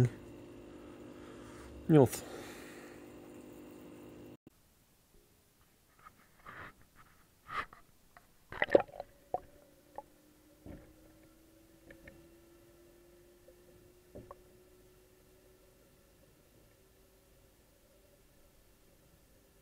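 Scattered knocks and clicks from a camera being handled and swung on its line as it goes into the fish tank, followed by a faint steady hum with a tone that slowly rises in pitch.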